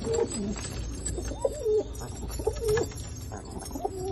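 Domestic Teddy pigeons cooing: four short coos, each rising and falling in pitch, about one a second.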